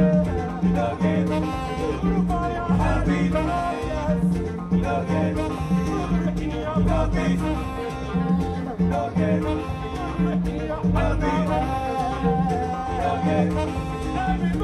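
Large afrobeat band playing live, with a repeating bass line, drums and hand percussion under a male lead singer's voice.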